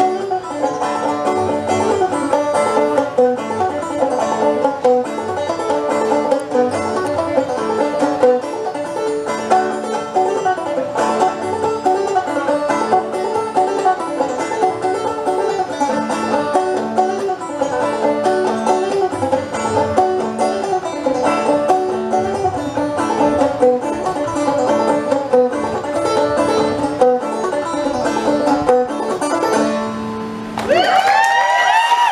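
Open-back banjo played solo in the clawhammer style: a brisk, steady old-time tune of picked notes over a repeating low note, with no singing.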